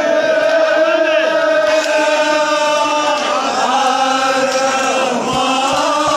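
A group of voices chanting in unison, with long held notes that slide from one pitch to the next, continuous and loud.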